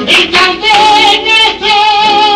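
Flamenco cante: a singer's voice holding a long, wavering melismatic note, entering about two-thirds of a second in. Just before it come two sharp accents from the accompaniment.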